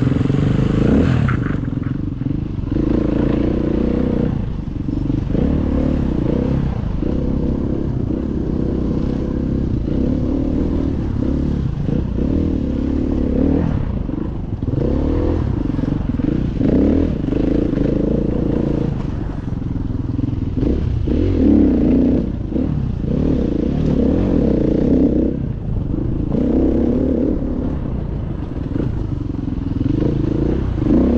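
KTM EXC enduro motorcycle engine running under constantly changing throttle while the bike is ridden over rough ground, its pitch rising and falling with each blip of the throttle.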